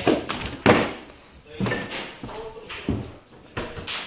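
A few sharp knocks and thuds, the loudest a little under a second in, as someone climbs up into a ship's cabin, with brief voice sounds between them.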